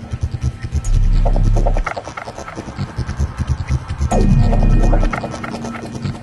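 Loud electrical mains hum and buzz. It switches between a steady low hum lasting about a second and stretches of rapid throbbing pulses.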